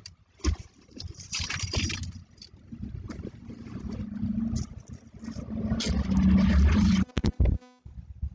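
Rustling and knocking of a person climbing out of a car's driver seat, a leather jacket brushing the seat and door frame, with a few sharp clicks. It is loudest just before the end, where it breaks into a quick run of clicks.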